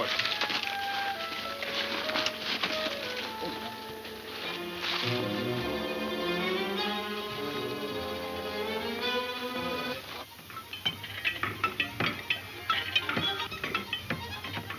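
Orchestral film score led by strings: a stepping melody, then held chords. About ten seconds in the music drops back and a run of irregular sharp clatters takes over.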